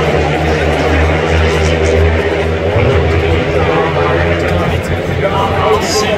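Longtrack racing motorcycles at full throttle down the straight, their 500 cc single-cylinder engines making a loud, steady drone heard from across the track. The drone weakens a little after about three seconds.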